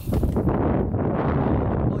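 Wind buffeting the microphone: a loud, steady low rumble.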